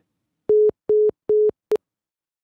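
Phone call-ended tone: three short beeps of one steady low pitch about 0.4 s apart, then a clipped fourth beep, as the IVR hangs up and the iPhone call disconnects.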